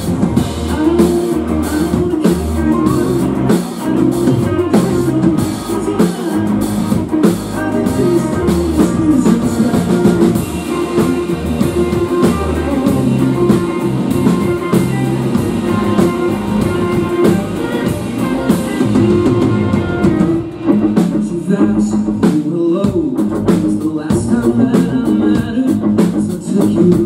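Live rock band playing: electric guitars, bass and a drum kit, heard through the club's PA from the audience. The drumming thins out about twenty seconds in.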